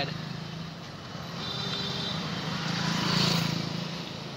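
Street traffic of cars and auto-rickshaws going by, engines running steadily. One vehicle passes close and is loudest about three seconds in.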